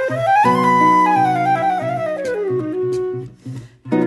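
Concert flute and nylon-string classical guitar playing a Brazilian-style jazz duet: the flute climbs to a high note as a guitar chord sounds about half a second in, then falls in a slow descending line over the held chord. Near the end both stop briefly before playing resumes.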